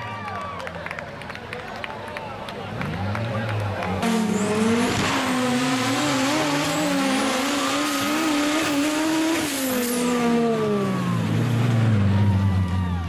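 Turbocharged street-class race car engine at full throttle on a dirt straight. It gets much louder about four seconds in, its pitch climbs for several seconds and drops sharply at a gear change about ten seconds in.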